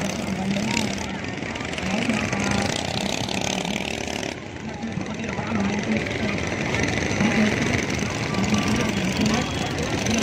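Small longtail (võ lãi) boat engines running on the river, a wavering hum, under the chatter of a crowd of voices. The sound shifts abruptly a little after four seconds.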